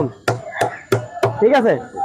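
Regular sharp knocks, about three a second, of a cricket ball tapped against the blade of a used cricket bat, with a man's voice between the knocks.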